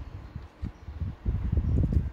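Handling noise as hands move a plastic model car body on the workbench close to the microphone: an irregular run of soft, low knocks and rubs.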